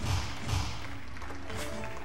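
Electronic soft-tip dartboard machine over steady background music: short thuds of darts landing in the first half second, then a rising electronic chime from the machine near the end as the turn finishes.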